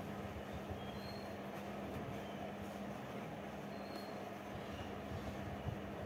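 Steady low background rumble with a continuous low hum, over the faint sound of a pen writing on notebook paper.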